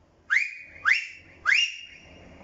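A man whistling loudly through his fingers: three short whistles, each sliding quickly up in pitch and then holding, the third held longest.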